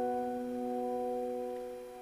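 Sustained piano chord in a ballad accompaniment, ringing on and slowly fading toward the end.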